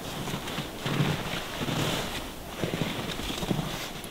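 Wind blowing over an open snowy ridge, buffeting the microphone with a steady rushing noise and a low rumble.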